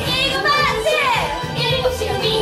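K-pop dance track playing, with high female vocals that slide up and down over a steady beat.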